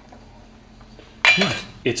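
A metal spoon clanks against a stainless steel saucepan about a second in, a sharp clink with a brief ring.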